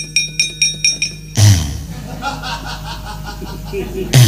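Rapid metallic clatter of a dalang's kepyak (bronze plates struck against the puppet chest), about five strikes a second. About a second and a half in, a strong low stroke brings in the gamelan with repeated metallophone notes over sustained tones, cueing a song.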